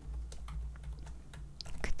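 Light, scattered clicks of computer keyboard keys being pressed.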